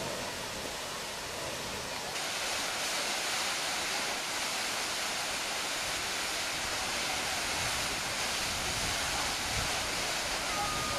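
Water gushing in jets from the outlets of Tsujun Bridge, a stone arch aqueduct bridge, during its water release: a steady rushing noise that grows louder about two seconds in.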